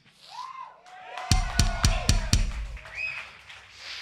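Drum kit struck in a quick run of about five evenly spaced hits with kick drum, starting about a second in.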